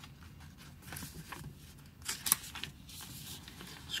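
Faint rustling and small clicks from a picture book being handled, with a louder rustle of paper a little after two seconds in.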